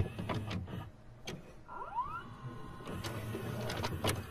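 Videocassette recorder mechanism: a few sharp clicks and clunks, then a motor whirring up in pitch and running steadily as the tape starts to play.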